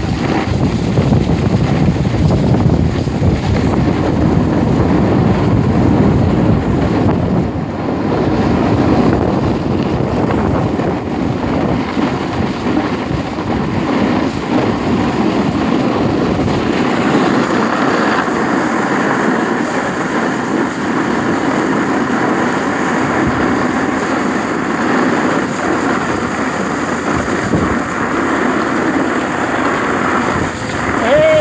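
Wind buffeting the microphone together with the hiss and scrape of sliding over groomed snow while moving downhill: a steady rushing noise that turns thinner and hissier about halfway through.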